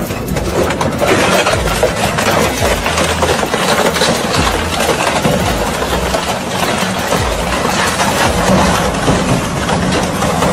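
Industrial rotary shredder running under load as it crushes a steel tricycle cart and bicycle frame between its toothed rotors: a steady low machine drone with continual cracking and crunching of metal.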